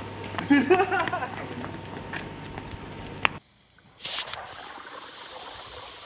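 Air being pumped through the hose into a half-full water bottle rocket, bubbling up through the water with a steady hiss as pressure builds behind the cork, just before launch. A short click comes a little past the middle.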